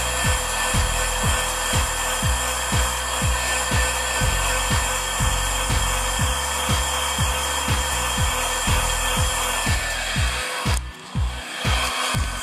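Heat gun running steadily, a loud even rush of air with a faint whine, cutting off about eleven seconds in. Background music with a steady, fast kick-drum beat plays throughout.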